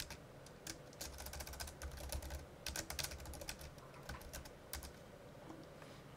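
Computer keyboard typing: quick runs of keystrokes that thin out and stop about five seconds in.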